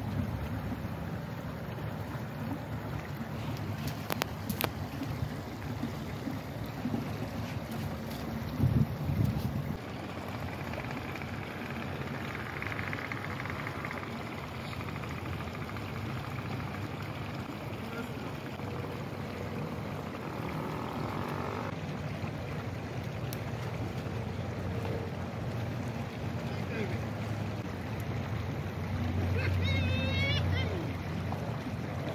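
Steady wind noise on the microphone over the wash of shallow creek water running among rocks, with a brief louder noise about nine seconds in.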